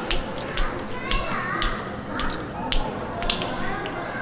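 A dozen or so sharp, irregular clicks, with a toddler's brief voice about a second in.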